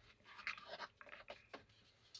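Near silence with a few faint, irregular rustling scratches in the first part, like fabric or handling noise.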